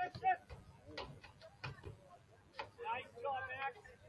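Distant voices calling out during a soccer match, with several sharp knocks in between, typical of a ball being kicked.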